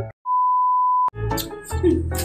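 Electronic bleep tone: one steady, high beep about a second long, cut off with a click, of the kind edited in to censor a word. Background music then comes back in.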